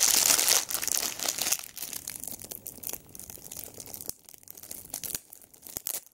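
Clear plastic packaging crinkling as hands pull small accessories out of it. Dense and loud for the first second and a half, then sparser crackles and clicks that die away.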